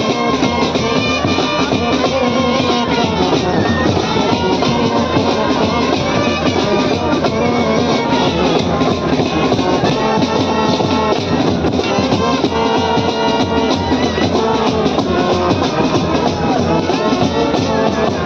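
Army brass band playing a devotional song live: large brass horns, trumpets and a clarinet carry the melody over snare and bass drums, loud and continuous.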